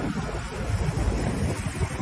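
Wind buffeting the microphone on a moving motorboat, over the steady rush of water past the hull.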